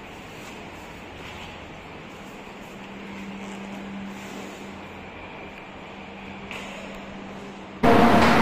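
A steady low hum over a faint, even hiss of background noise. A loud voice cuts in right at the very end.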